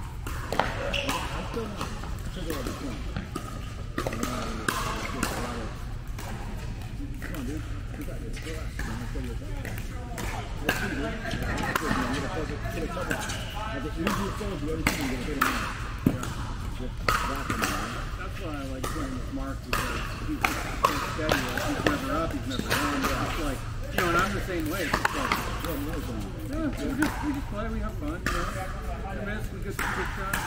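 Pickleball play: paddles striking the hard plastic ball and the ball bouncing on the court, making sharp pops at irregular intervals, over a background of indistinct voices.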